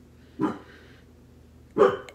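Dog barking twice, two short barks about a second and a half apart.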